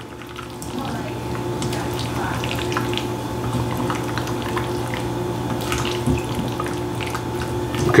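Silicone spatula folding mayonnaise-dressed potato salad in a stainless steel bowl: soft wet squelches and light scrapes against the bowl. A steady low hum runs underneath.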